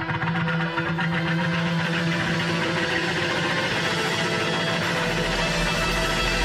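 A live blues-rock band plays an instrumental passage with electric guitar, drums and keyboard, building up in volume. A heavy low bass comes in about five seconds in.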